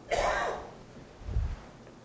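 A short throat clear in the first half second, breathy and without pitch, followed about a second later by a soft low thump.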